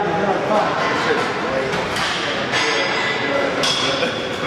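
Voices and laughter in an echoing gym, with a high metallic ringing clink about two and a half seconds in that rings for about a second, like weight plates or gym equipment knocking together.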